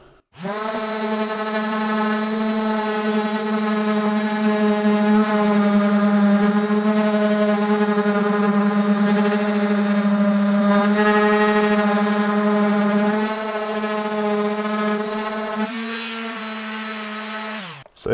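Makita M9204 random orbit sander running under load as it sands old finish off a wooden door panel: a steady motor hum with a whine of overtones. It drops in level about 13 seconds in and again near 16 seconds, then stops abruptly just before the end.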